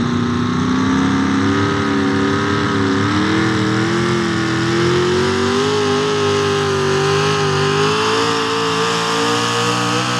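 Small-block V8 of a 4x4 pulling truck at full throttle under load while dragging a pulling sled, its pitch climbing slowly and wavering slightly as the run goes on.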